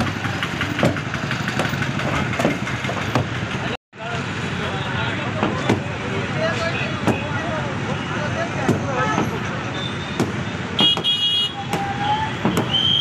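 Sledgehammers striking a plastered masonry wall, hard knocks repeating irregularly about once a second as workers break it down, over a background of voices.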